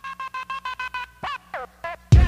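Turntable scratching in a break where the hip hop beat drops out: a held tone chopped into rapid stutters for about a second, then a few quick falling pitch sweeps before the drums come back in.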